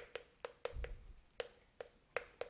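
Chalk tapping and stroking on a chalkboard as Korean characters are written: a string of sharp, uneven clicks, about seven in two seconds.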